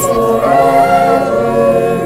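A small choir of young voices singing together, holding long notes.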